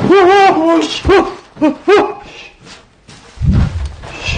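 A voice wailing in a series of high, wavering cries that rise and fall in pitch: one long cry at the start, then three short ones over the next two seconds. A low thud follows near the end.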